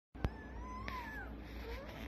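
Day-old puppies squeaking while nursing: one thin, high whine that wavers and then falls away about a second in, followed by a fainter short rising squeak. A sharp click comes just after the start.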